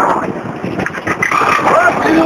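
Road traffic passing close by, with the engine and tyre noise of heavy vehicles. Voices are mixed in.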